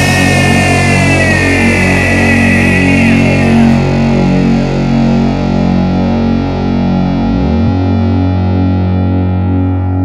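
Heavy distorted electric guitar chords held and ringing, with no drums. A high note slides down about two seconds in. About seven seconds in the deepest bass drops away, leaving a steady low drone.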